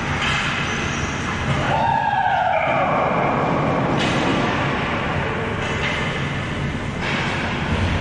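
Steady rumbling room noise of a large, echoing ball hockey arena during play, with a falling tone about two seconds in.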